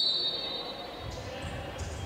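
A referee's whistle gives a short high tone right at the start, fading within about a second. Then comes the low rumble of a sports hall with soft knocks from the ball and players' feet on the wooden court.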